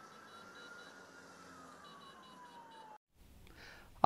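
Faint emergency-vehicle siren making one slow wail, rising and then falling in pitch, over faint background noise. It cuts off about three seconds in.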